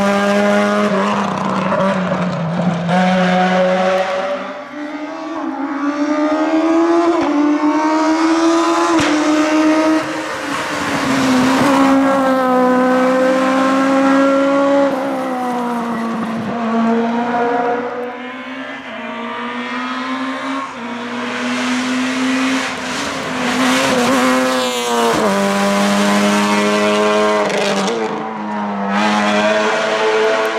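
Rally car engines at high revs as the cars accelerate away, the pitch climbing through each gear and dropping sharply at the shifts and lifts, several times over.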